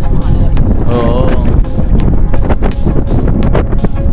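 Strong wind buffeting the microphone, with music and a singing voice underneath; a wavering sung note is held briefly about a second in.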